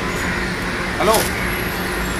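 Steady city traffic noise, an even rumble and hiss with a low hum, under a single call of "Hello?" about a second in.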